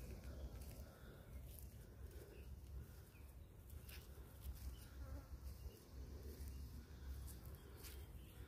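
Faint woodland ambience: an insect buzzing over a steady low rumble, with a few faint clicks.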